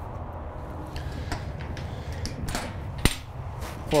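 Faint knocks, then a single sharp metallic click about three seconds in as the latch of a horse-trailer stall divider is released and the divider swings open, over a steady low rumble.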